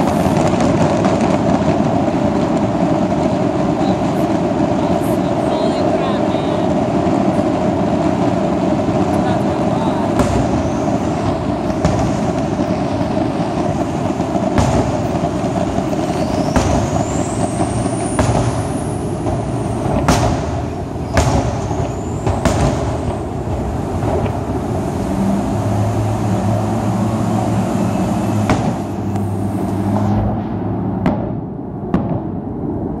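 Fireworks exploding in scattered bangs, mostly in the second half, with whistling shells gliding up and then down in pitch in the middle. They sit over a steady wash of highway traffic noise, with a low engine hum near the end.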